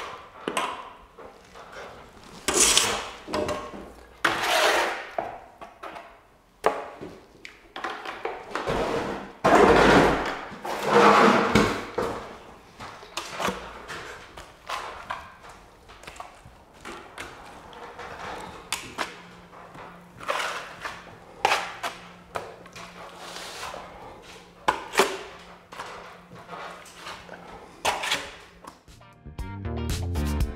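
Steel plastering trowel scraping and swishing across wet skim plaster in irregular strokes. The trowel knocks and scrapes on the hawk between strokes.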